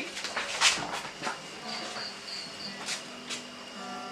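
A cricket chirping in a short run of high, even pulses, about three a second, with a few light clicks and rustles around it.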